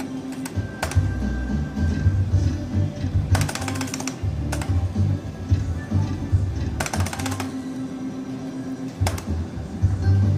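Turbo Cash slot machine's game music and jingles playing through its free spins, with two bursts of rapid electronic clicking, about three seconds in and again about seven seconds in.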